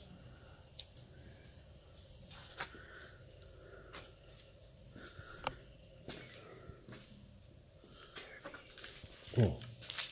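Soft footsteps with scattered light clicks and scuffs on a littered floor, over a faint steady high whine.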